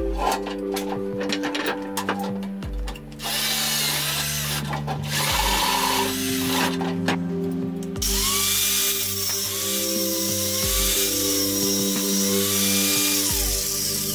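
Background music with a power tool running over it in two stretches, briefly a few seconds in and then for about six seconds from the middle until just before the end, its motor pitch wavering as it works metal.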